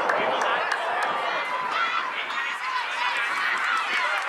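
Several voices calling and shouting over one another across a soccer pitch, players and spectators during play, with no words that can be made out.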